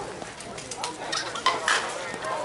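Slowpitch softball bat striking the pitched ball once with a sharp crack about one and a half seconds in, followed by a shout.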